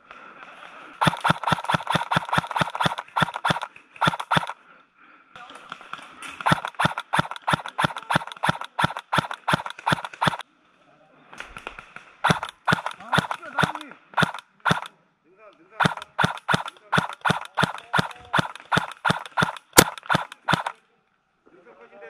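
Airsoft guns firing strings of quick single shots, about four or five a second, in several runs broken by short pauses, with one louder sharp crack near the end.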